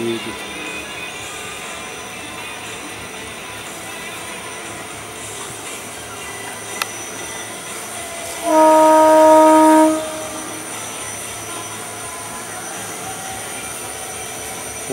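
A single steady horn blast, about a second and a half long, a bit over halfway through, over a steady outdoor background hiss.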